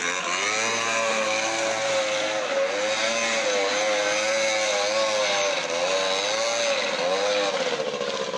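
Small engine on a handlebar-steered ride-on vehicle, running hard at high revs, its pitch wavering up and down as the throttle is worked.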